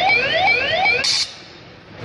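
An electronic alarm sounding repeated rising whoops, about three a second, cutting off about a second in, followed by a short hiss.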